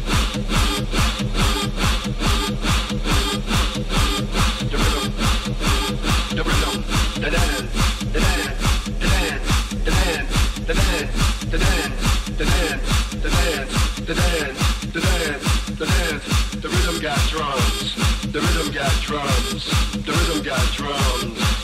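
Techno music from a live DJ mix: a steady kick drum a little over twice a second, with dense percussion and warbling synth sounds over it.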